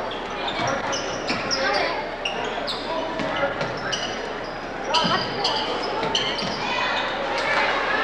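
Live high school basketball play in an echoing gym: a basketball dribbled on the hardwood floor, sneakers squeaking in short high chirps, and voices of players and spectators in the background.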